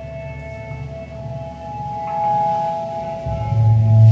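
Electric guitar through effects pedals playing long, sustained ringing notes washed in reverb, building slowly; a deep bass note swells in near the end and the music grows louder.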